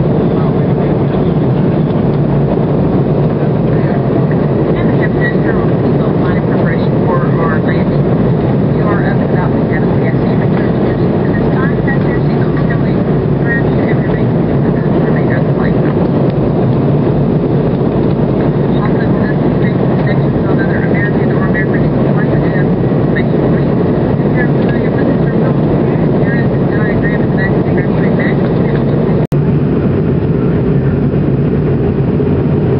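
Steady loud cabin roar of a McDonnell Douglas MD-83 airliner in descent: airflow over the fuselage and the hum of its rear-mounted Pratt & Whitney JT8D turbofans, unchanging in level. It cuts out for an instant near the end.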